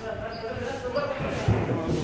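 Low, heavy thumping beats, the loudest about one and a half seconds in, over held tones and voices.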